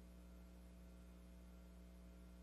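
Near silence: a faint, steady low electrical hum on an idle audio line, with nothing else happening.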